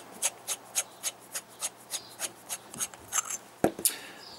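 The threaded metal bottom cap of a tube mod being unscrewed on its fine threads: a dry scraping rasp about four times a second, with a single knock near the end.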